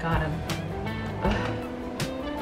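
Background music, with a woman's voice sounding briefly over it.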